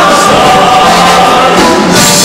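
Show choir singing long, held chords with full voices, loud and continuous.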